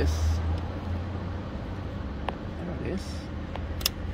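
Small clicks of a plastic retaining clip being worked onto the coolant drain plug of a Toyota hybrid's engine water pump, the sharpest click near the end as it seats, over a low steady hum.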